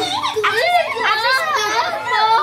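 Several young children's high voices talking and exclaiming over one another at once.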